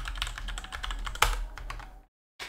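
Rapid typing on a computer keyboard: a quick run of key clicks with one louder keystroke just past a second in.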